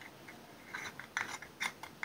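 Yellow plastic screw lid being twisted onto a small Carmex lip balm jar: a quick series of short rasping clicks from the threads, starting under a second in.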